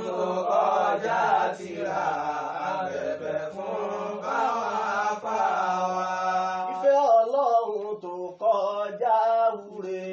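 Male voices chanting without accompaniment, a slow melodic chant with long held notes. About seven seconds in, it breaks into shorter phrases that rise and fall.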